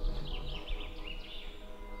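Soft background music with sustained low notes, under faint wavering high notes.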